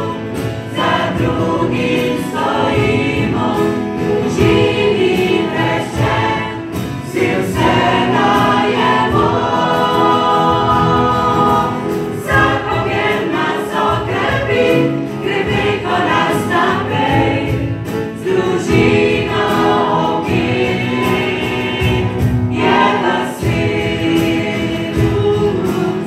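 A small mixed group of women and men singing a song in Slovenian together, with a guitar playing along.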